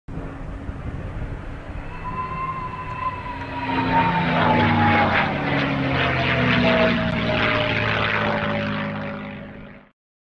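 P-51D Mustang flying past, its Packard Merlin V12 engine running under a high whistle that starts about two seconds in and glides slowly down in pitch as the plane goes by. The whistle is made by air blowing across the open wing gun ports. The sound swells in the middle and fades out near the end.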